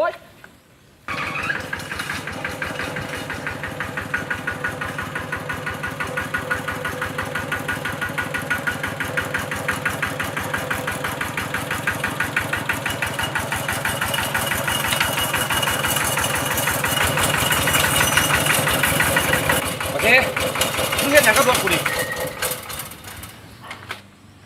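Small motorcycle engine starting about a second in, then running with an even, rapid putter that grows a little louder. Voices come in briefly over it near the end.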